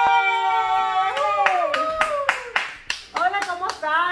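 Several voices holding one long cheering note together, then a quick run of hand claps, about four a second, for roughly two seconds while a voice trails down in pitch.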